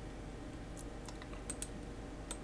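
A few faint clicks from a computer keyboard and mouse, about three in the second half, over a low steady hum.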